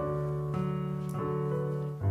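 Piano playing the introduction to a hymn: sustained chords, with a new chord struck every half second or so.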